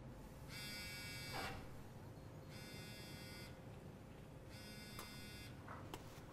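Mobile phone buzzing with an incoming call: three buzzes of about a second each, one every two seconds, with a few faint knocks between them.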